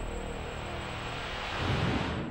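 A rumbling, whooshing swell of noise used as a transition sound effect, steady and growing slightly louder near the end.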